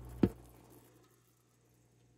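A single sharp click about a quarter of a second in, over a faint hum, then near silence.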